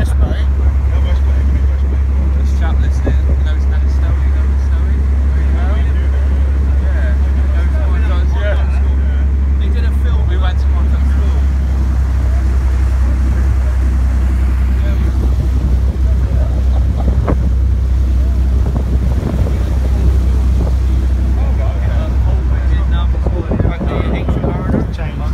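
Water taxi's engine running steadily underway, a constant low drone, with the rush of water and wind on the microphone over it.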